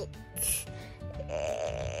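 A toddler's short breathy noise, then a high-pitched, drawn-out vocal sound in the second half, over background music.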